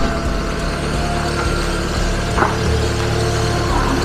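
Audi TT 8N 1.8T engine running at low revs as the car reverses slowly out, a steady low rumble. Background music with held notes plays over it.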